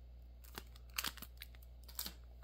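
A cellophane-wrapped trading card and a cardboard box insert being handled: a handful of short, faint crinkles and taps spread across the two seconds.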